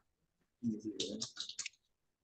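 Brief, quiet, indistinct speech, a voice muttering for about a second, with dead silence before and after it.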